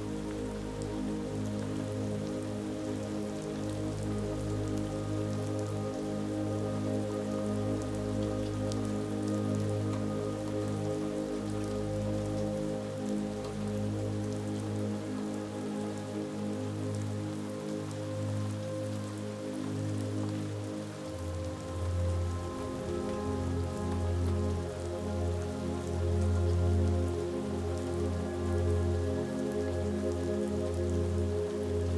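Steady rain falling, with soft, slow ambient music of long held chords underneath; the chord changes about two-thirds of the way through.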